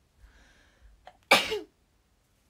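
A young woman sneezes once: a soft intake of breath, then a single sharp, loud burst about a second and a half in.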